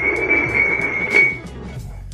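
Upturned ceramic mugs being slid across a hardwood floor, a scraping with a steady high squeal that lasts about a second and a half, then stops. Background music plays under it.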